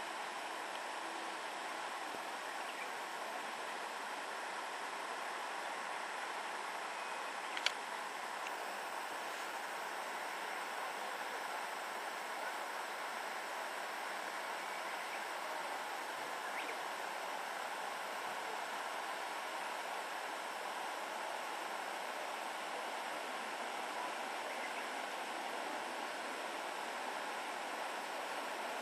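Steady, even hiss of outdoor background noise, with a single sharp click about seven and a half seconds in.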